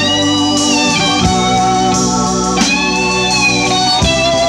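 Live rock band music: an electric guitar plays long sustained lead notes with bends in pitch, over steady held chords.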